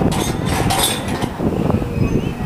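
Gusty wind buffeting the microphone: a heavy rumble throughout, with a louder rush of hiss in the first second or so.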